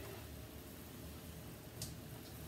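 Quiet kitchen room tone, with one brief faint tick near the end as cut potato pieces are dropped into the pot of water.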